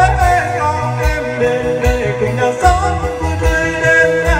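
Live band playing a slow Vietnamese pop ballad: a man's amplified singing voice over keyboard, electric guitar, bass and drum kit, with the drums and bass keeping a steady beat.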